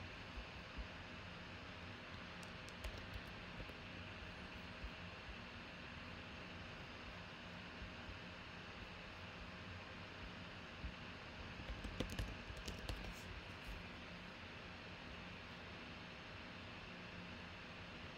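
Faint room tone with a steady low hum, with a few scattered short clicks and a small cluster of clicks about twelve seconds in.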